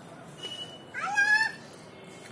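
A single short high-pitched vocal call about a second in, rising quickly and then held level for about half a second before stopping.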